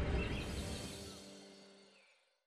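Tail of a short musical sting: a soft held chord over a low swelling rumble, with faint chirps on top, fading away to silence near the end.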